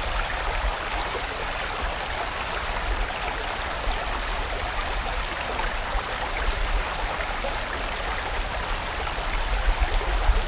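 Mountain stream running steadily, a continuous rush of water with a low rumble underneath.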